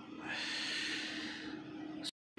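A person's breath, one long hissing breath close to the microphone that fades away near the end.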